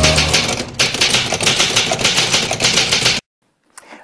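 Rapid typewriter keystroke clatter, a sound effect for on-screen text being typed out letter by letter. It cuts off abruptly just over three seconds in.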